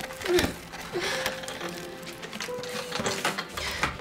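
Film score music: short held notes and brief swooping pitches over a string of irregular clicks and taps.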